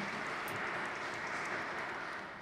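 Audience applauding, a steady round of clapping that greets a guest as he is introduced.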